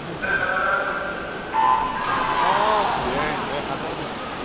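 Swimming race start: a steady electronic tone, then a louder, lower tone that cuts in about a second and a half in as the start signal, followed by spectators shouting and cheering as the swimmers dive in.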